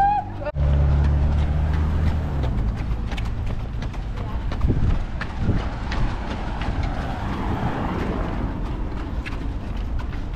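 A runner's footsteps on asphalt in a steady rhythm, picked up by a camera carried on the run. A low rumble on the microphone fills the first couple of seconds.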